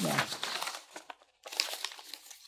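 Sheets of paper rustling and crinkling as they are handled and leafed through, in two stretches with a short pause about a second in.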